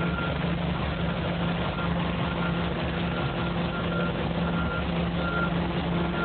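Construction machinery engine running steadily, with a backup alarm beeping repeatedly over it.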